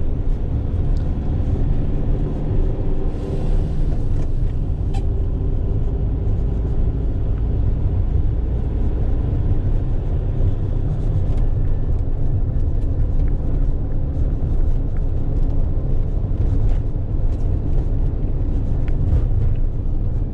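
A Fiat Ducato van's engine and road noise inside the cab while driving, a steady low rumble.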